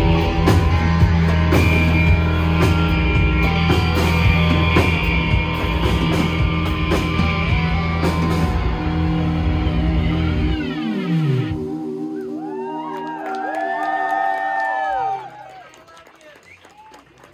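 Live rock band with electric guitars, bass and drums playing the end of a song. About ten seconds in the bass and drums drop away under a falling pitch dive, leaving wavering, bending tones that cut off suddenly near the end.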